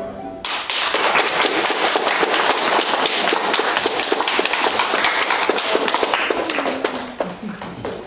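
Audience applause, many hands clapping, breaking out just as the last note of the dance music dies away and thinning out near the end.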